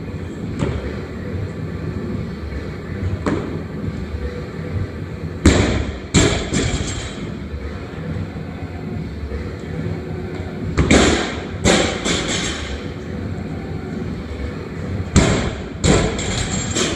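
Heavy thuds on a gym floor over the steady background noise of a large room, coming in groups: a pair, then three close together, then another pair, a few seconds apart.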